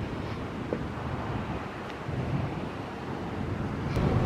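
Wind on the microphone: a steady, even rush of outdoor noise with no distinct events.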